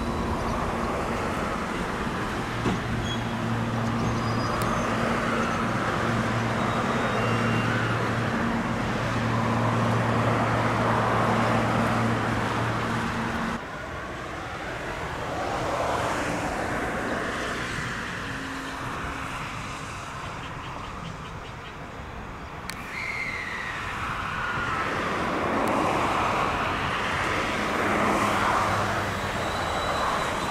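JR West 223 series electric train at a station platform, its equipment giving a steady low hum that cuts off sharply about halfway through. Near the end the train's running noise builds as it starts to move off.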